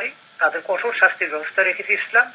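Speech only: a man talking in Bengali, after a brief pause at the start.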